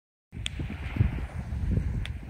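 Wind buffeting the microphone, an uneven low rumble, with a single sharp click about half a second in.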